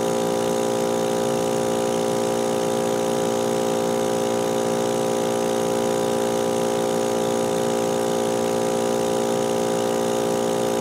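Electric laboratory vacuum pump running with a steady, even-pitched hum, pulling suction on the filter flask during vacuum filtration.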